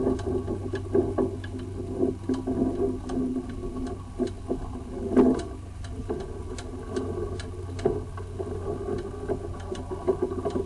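Sewer inspection camera's push cable being pulled back through a drain line: irregular clicks and knocks over a steady low hum, with one louder knock about five seconds in.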